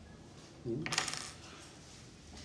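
A single short metallic clink about a second in, with a brief bright ring, from the small iron nail and magnet being handled.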